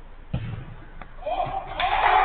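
A football struck with a single sharp thud about a third of a second in, then a lighter knock at about one second. Players start shouting in the second half.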